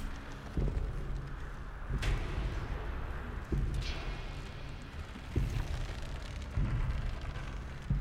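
A series of deep booming thuds, about one every second and a half, with a couple of brief whooshes between them, under a massed-army battle scene.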